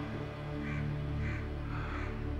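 Dramatic background music holding low sustained notes, with a crow cawing three times at even intervals over it.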